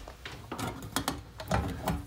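Light metallic clicks and rattles from the latch and door of a steel electrical breaker panel as it is unlatched and pulled open.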